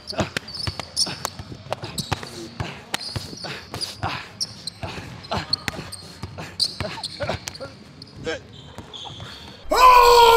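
Basketball dribbled on a hardwood gym court: a quick, irregular run of sharp bounces. A loud shouting voice cuts in just before the end.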